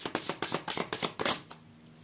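A deck of tarot cards being shuffled by hand: a fast run of crisp card clicks that stops about a second and a half in.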